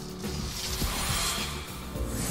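Wild Frames online slot game music with a swelling whoosh effect as the symbols on the reels transform and light up.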